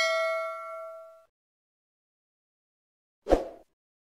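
Notification-bell chime sound effect from a subscribe-button animation, ringing with several overtones and fading out over about a second. A short thud follows about three seconds in.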